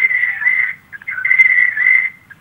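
A steady high whistling tone on a telephone line, with hiss around it, in two stretches of about a second each with a short break between.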